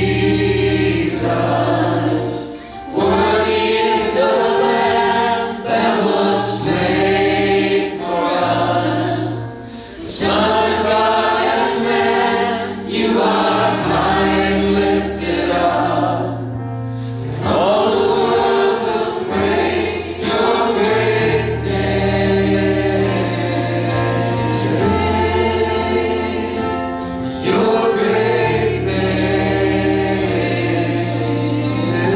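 Church worship team singing a gospel praise song together in harmony, backed by keyboard and band with long held low bass notes that change every couple of seconds.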